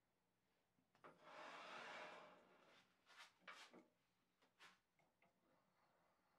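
Faint handling sounds from a small log being mounted between centers on a wood lathe: a scraping for about a second, then a few light knocks and clicks as the tailstock is brought up and locked.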